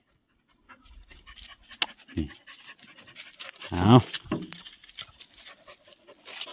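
A dog panting close to the microphone, amid faint crackling of dry leaf litter.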